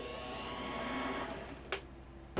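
Small bench lathe's electric motor running for a moment with a steady hum of several pitches, then dying away. A sharp click comes near the end.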